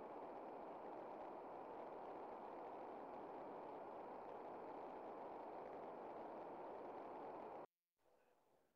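Faint, steady hiss of background noise from an open microphone on a video call. It cuts off suddenly near the end.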